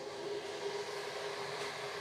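Steady mechanical hum with a single held tone over a light hiss: background noise of a running machine in the room.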